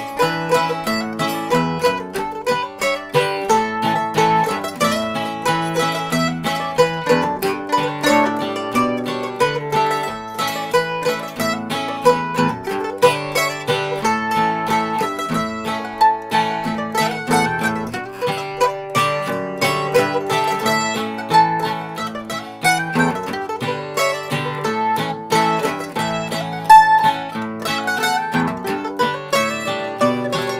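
Acoustic guitar and mandolin playing an old-time tune together, with a steady run of quick plucked notes over strummed chords.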